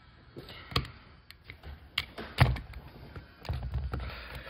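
Utility knife blade scraping and picking silicone coating off an LED strip: a string of small irregular clicks and scrapes, the sharpest about two and a half seconds in, with a short rougher scrape near the end.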